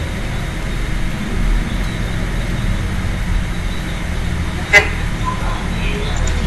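Steady low rumble of background noise, with a short vocal sound just before the end.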